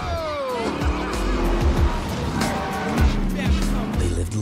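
Action-trailer sound mix: music over a car's engine and tires squealing as the car slides on wet pavement, with a squeal falling in pitch near the start.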